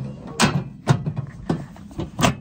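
Three sharp knocks or taps about half a second apart.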